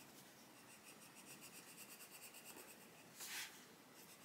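Faint scratching of a coloured pencil shading on paper, with a brief louder scratchy noise a little over three seconds in.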